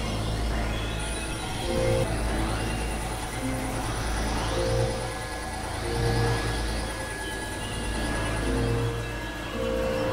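Experimental electronic synthesizer drone music: a deep steady drone under short held notes that come and go, with repeated rising sweeps above them. A thin, steady high tone enters about a second in and holds.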